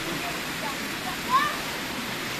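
Pool water splashing and churning steadily as children swim and kick. A short, high child's voice rises briefly about halfway through.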